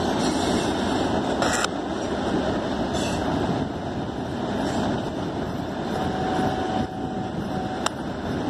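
Freight cars of a Norfolk Southern train rolling across a stone arch bridge: a steady noise of wheels on rail. A faint thin steady tone comes in for a couple of seconds near the end.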